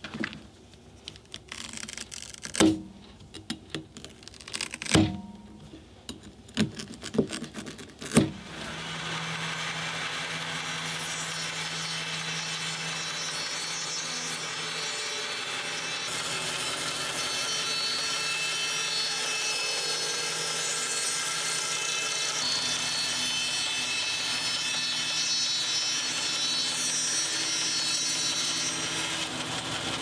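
A few knocks and taps as the shoe is handled, then, about eight seconds in, a bandsaw starts and runs steadily as it cuts lengthwise through the 3D-printed shoe.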